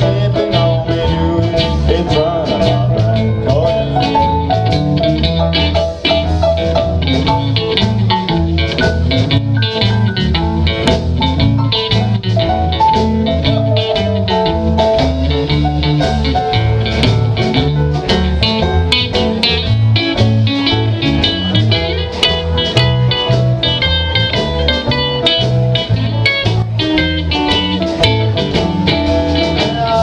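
A country-rock band playing an instrumental break live: electric guitars over electric bass, keyboard and a drum kit keeping a steady beat, with no singing.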